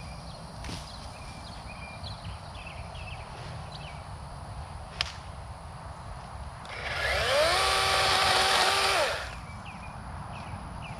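DeWalt XR brushless battery chainsaw spinning up about seven seconds in, running at a steady high pitch for about two seconds, then winding down.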